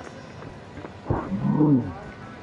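A man's loud celebratory yell, starting about a second in, its pitch rising and then falling within under a second: a fielder's shout of triumph at the wicket.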